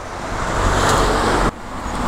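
Outdoor background rush of noise, like distant road traffic, that swells, drops off abruptly about one and a half seconds in, and then builds again.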